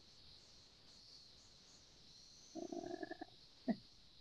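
A quiet pause on a video call, broken about two and a half seconds in by a short low voice sound, steady in pitch and under a second long, then a brief second voice sound just before the end.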